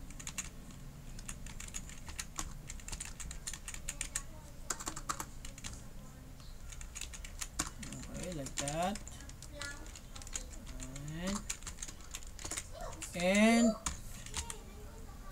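Irregular keystrokes on a computer keyboard as text is edited. A person's voice makes a few short wordless sounds that slide in pitch, the loudest about a second before the end.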